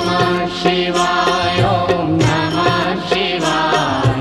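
Devotional song with a chanting voice over a steady percussion beat.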